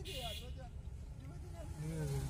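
Low, steady engine and road rumble of a car moving slowly, heard from inside the cabin, with faint, quiet voices in the first second and a brief hiss at the very start.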